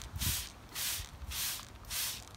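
Hand trigger spray bottle squirting a liquid onto plant leaves: a quick run of short hissing sprays, about one every half-second or so.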